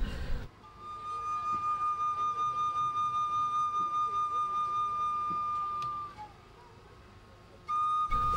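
A single high musical note, like a flute or whistle, held steadily with a slight even pulse. It breaks off a little after six seconds and comes in again at the same pitch just before the end.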